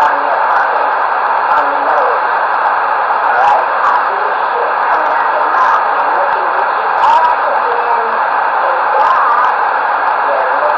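Two-way radio receiver's speaker carrying a steady, loud hiss of static with faint, unintelligible voices under it.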